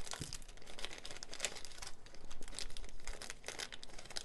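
Thin clear plastic bag crinkling and crackling irregularly as small items are pulled out of it by hand.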